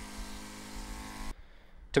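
Small electric water pump circulating cooling water through a distillation condenser, running with a steady mains-like hum that the operator calls a bit noisy. The hum cuts off abruptly about a second and a half in.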